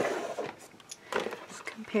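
A woman talking quietly, with a few light clicks of small objects being handled between her words.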